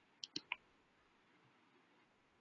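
Three quick, sharp clicks close together in the first half-second, over near-silent room tone.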